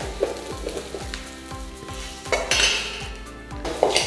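A metal spoon stirring and scraping through a mixture in a stainless-steel bowl, with soft knocks against the bowl about three times a second.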